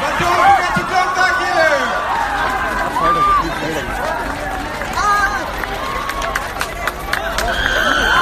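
Large crowd of runners and spectators cheering and shouting as a mass run sets off, many voices calling out over each other over a steady crowd din.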